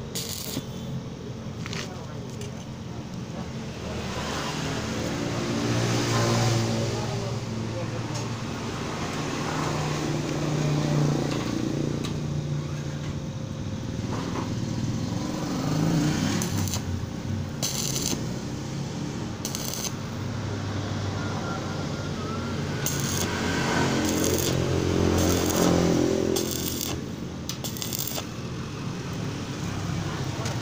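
Stick-welding arc crackling in several short bursts, each a second or less, through the second half, as tack welds are laid on a steel gate frame. A voice runs in the background throughout and is the loudest sound.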